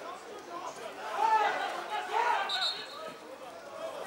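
Distant voices shouting across the ground, with two louder calls about one and two seconds in.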